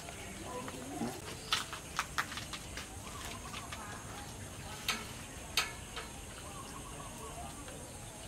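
Quiet, scattered sharp clicks and light taps of fingers picking the skin and flesh off a grilled fish on a wooden chopping board.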